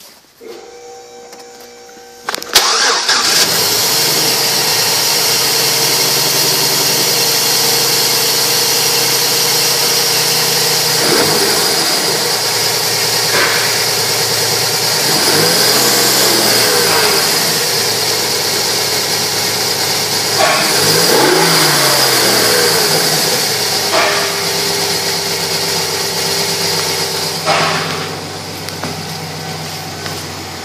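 A 2007 Chevrolet Silverado 1500's 4.3-litre V6 catches and starts about two and a half seconds in, then runs steadily with the hood open. It is revved twice, briefly, about halfway and about two-thirds of the way through, each rev rising and falling in pitch. Near the end it sounds quieter and farther off.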